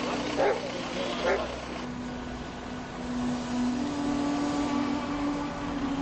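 Outdoor vehicle noise, a steady rushing that continues after a few short voices in the first second or so. A held low tone from background music sounds underneath.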